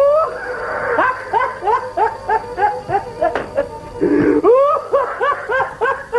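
A man laughing hard: a rapid string of short, rising-pitched 'ha' bursts, about four a second, with a brief break about four seconds in.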